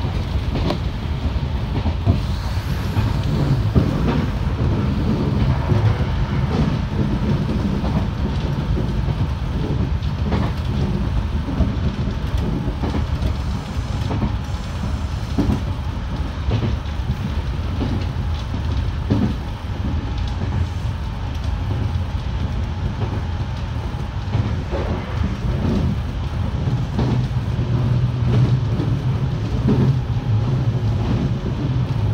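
Nankai electric train running along the track, heard from inside the front cab: a steady low rumble of wheels on rail, with occasional sharp clacks as the wheels pass rail joints. A steadier low hum comes in near the end.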